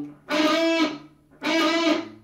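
Gibson Les Paul electric guitar playing the same lick of the solo twice, about a second apart: the E at the B string's 5th fret together with a bend on the G string's 7th fret. Each stab rings for about half a second.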